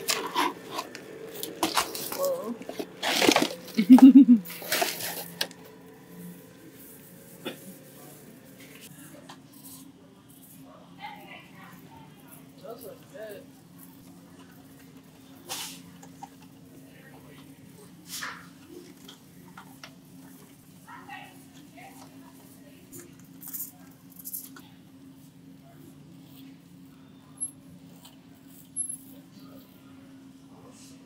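Cardboard candy-box packaging handled at a store shelf for the first five seconds or so, with sharp clicks and rustling. After that a quiet store background: a steady low hum with scattered faint clicks and distant voices.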